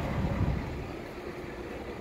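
Low, steady diesel rumble of a heavy recovery truck running while it has a stalled race truck hooked on its underlift, easing off a little after about half a second.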